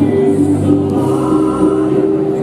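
Choral music, voices holding long sung notes.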